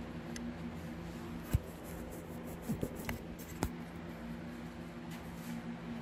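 A steady low hum from machinery in the room, with a few soft knocks: one about a second and a half in, then a quick pair and two more between about two and a half and three and a half seconds in.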